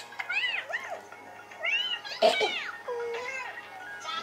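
A little girl making high-pitched wordless whines and squeals, each rising and falling in pitch, a couple near the start and more around the middle. Soft background music runs under them.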